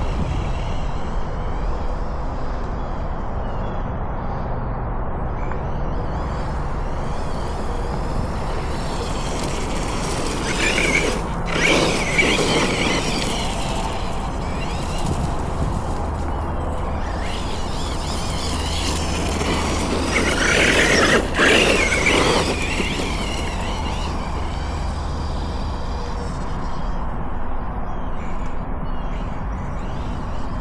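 Losi Hammer Rey RC truck's brushless electric motor and drivetrain whining as it is driven over grass, loudest in two bursts of acceleration about a third and two thirds of the way through, over a steady low outdoor rumble.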